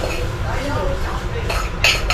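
Dishes and cutlery knocking and clinking in a kitchen sink during washing-up, with one sharp clink near the end.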